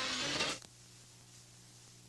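Near silence with a faint, steady low hum. The louder sound before it cuts off abruptly about half a second in.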